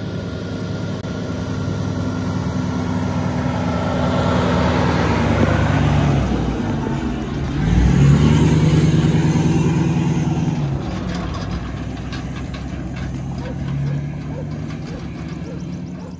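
Pickup truck towing a livestock trailer, its engine running steadily as it comes closer, loudest about halfway through, then fading as it moves on.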